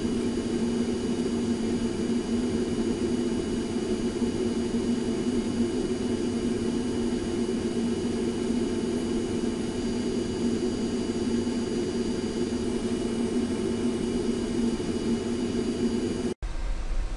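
Steady machine whir with a low hum and faint, steady high-pitched tones. It starts and stops abruptly at the edits on either side.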